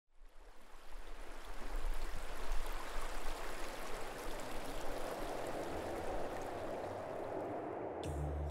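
River water rushing steadily over shallow rapids and rocks, fading in over the first second or two.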